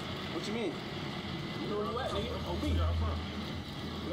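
Men's voices talking outdoors over a low, steady vehicle hum that swells briefly about two and a half seconds in.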